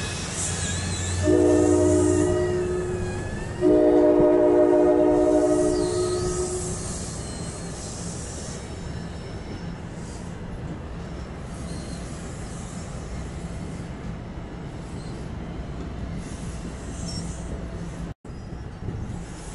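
Multi-chime air horn of an NJ Transit ALP-45DP locomotive sounding two blasts, a shorter one and then a longer, louder one. Underneath is the steady rumble of bilevel passenger coaches rolling past, with faint wheel squeal early on.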